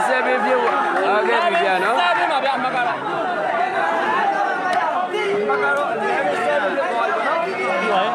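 Crowd of spectators chattering: many voices talking over one another at once, at a steady level.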